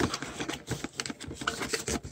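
Cardboard box flaps and the paper insert inside being worked open by hand: an irregular run of small crackling clicks and scrapes of cardboard and paper.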